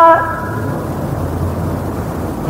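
Steady low rumbling background noise of the sermon recording, fairly loud, during a pause in the preaching. A man's drawn-out word cuts off just at the start.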